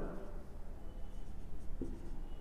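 Marker pen writing on a whiteboard: faint scratchy strokes as a few letters are written.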